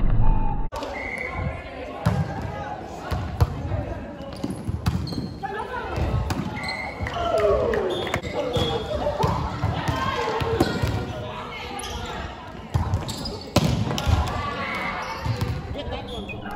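Indoor volleyball rally: the ball is struck and hits the floor several times, each a sharp knock echoing in a large gym hall, among players' calls.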